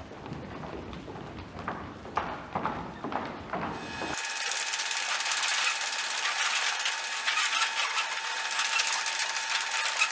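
Many feet running and thudding on a wooden gym floor as a crowd of students hurries to desks. About four seconds in, this cuts abruptly to a thin, hissing static with steady whining tones: a distorted-tape glitch effect.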